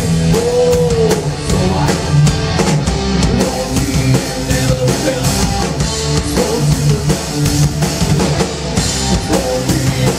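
Live rock band playing at full volume: drum kit, distorted electric guitars and bass in an instrumental passage, with a held note bending in pitch about half a second in.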